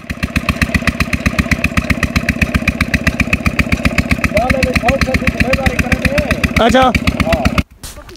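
Single-cylinder Peter diesel engine driving a tubewell pump, running with a steady, even chug. It cuts off just before the end.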